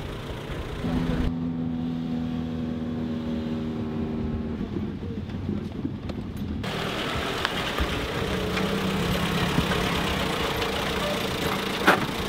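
A Veryca mini truck's engine running: a steady hum at first, then a noisier running sound as the truck drives along, with a sharp knock near the end.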